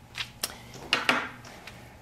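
A few short rustles and a light click as cotton fabric and the paper pattern are handled on the table.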